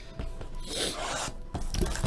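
Plastic shrink wrap on a trading card box being torn and rubbed off by hand: a scratchy crinkling rustle, strongest a little under a second in, with a few small clicks.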